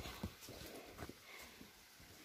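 Faint footsteps on a dirt woodland path: a few soft, irregular steps that die away near the end as the walking stops.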